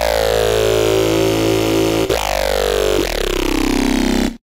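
Serum software synthesizer playing an FX preset: a sustained electronic sound over a steady low drone, with falling sweeps from high pitch that restart about two seconds in and again about a second later. A fast rippling pulse comes in near the end.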